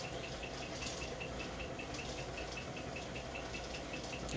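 KEF HTB2 subwoofer playing faint low bass, with a faint steady ticking about five times a second.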